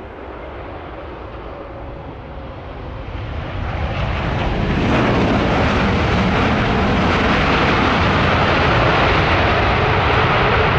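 Jet engines of a landing Airbus A380. The noise swells from about three seconds in and holds loud and steady from about five seconds on.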